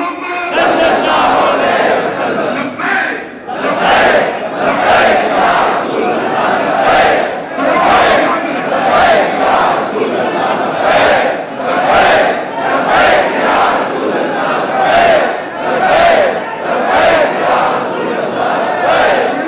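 A large crowd of men chanting loudly together in rhythm, with a shouted swell about once a second.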